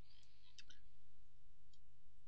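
A handful of faint computer mouse button clicks, spaced irregularly, over a low steady hum.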